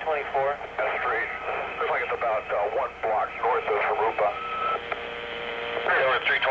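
Recorded police two-way radio traffic: thin, narrow-band voices over the radio that cannot be made out, then a steady tone on the channel from about four seconds in.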